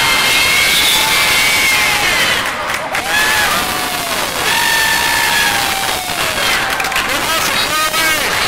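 Basketball sneakers squeaking on a hardwood gym floor, a string of short curving squeaks and longer drawn-out squeals, over crowd voices in the gym.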